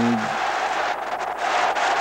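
Arena crowd cheering and applauding a completed heavy overhead lift: a steady, loud wash of noise.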